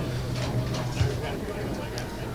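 Background noise of a bar: a faint murmur of voices over a steady low hum, with a light click about a second in.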